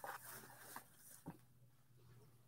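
Near silence: room tone, with a few faint, brief sounds and a small tick about a second and a half in.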